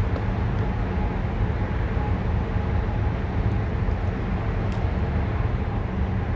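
Steady low rumble with a faint machinery hum, and a few faint clicks about halfway through.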